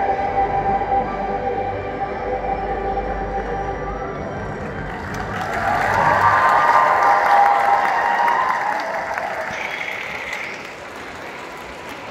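A choir song's final held chord over a low bass, then, about five seconds in, audience applause and some cheering from a large crowd that swells and dies down near the end.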